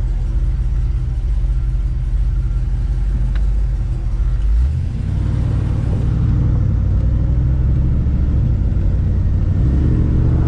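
1957 Chevrolet Bel Air's 350 V8 with headers and dual exhaust, heard from inside the cabin as the car pulls onto the road. It runs low and steady, then picks up about five seconds in as the car accelerates.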